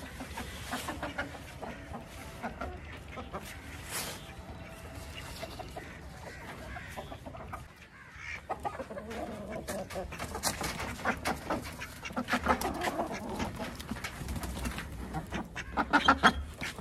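Chickens clucking in wooden coops, busier and louder in the second half. Near the end there is a quick clatter of sharp clicks as a wooden coop door is handled at its latch.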